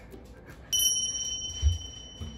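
A single bright bell ding, a comedic edit sound effect, strikes about 0.7 s in and rings on as a steady high tone for about two seconds. A brief low thump comes about a second after it.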